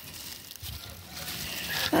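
Footsteps and rustling through dry leaves and weeds, with phone handling noise, fairly quiet; a word is spoken near the end.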